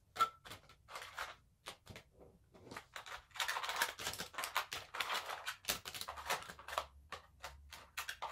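Plastic lipstick tubes and other makeup items clicking and clattering as they are dropped into a plastic storage basket. Light taps come throughout, with a busier run of rattling around the middle.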